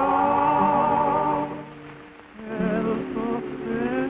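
Singing, a long wavering note held until about a second and a half in, then a short pause before the next sung phrase begins.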